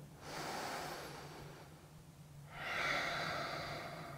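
A man breathing audibly during a held stretch: two long breaths, a softer one near the start and a louder one from about halfway through.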